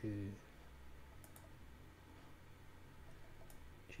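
A few faint computer mouse clicks: two close together about a second in, and one more near the end, over a steady low hum.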